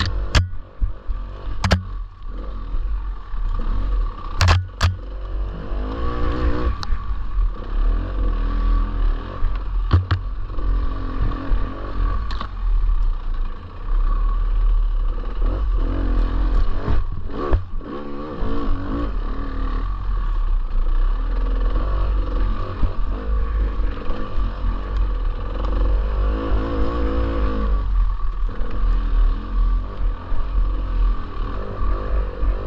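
Dirt bike engine ridden along a rough single-track trail, its revs rising and falling over and over as the throttle is worked, over a constant low rumble. A few sharp knocks stand out in the first five seconds.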